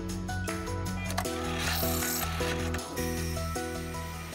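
Background music throughout, with a metal-cutting band saw cutting a steel rod heard as a rasping hiss under it from about a second in until about three seconds in.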